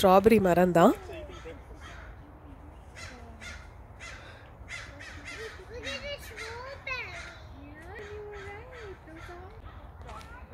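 Crows cawing: a loud run of calls in the first second, then fainter calls from farther off.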